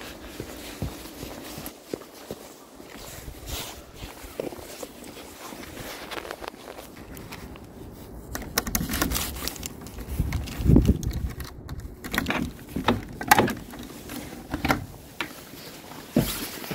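Faint footsteps and handling noise, then from about halfway a key working in a door lock, with a run of clicks, clanks and knocks and one heavy thud as the door is opened.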